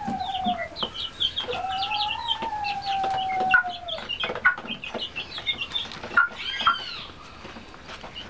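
Young chicks peeping in many quick high-pitched chirps. Over them a chicken gives a long, drawn-out crow on one steady note, briefly at the start and then for a couple of seconds.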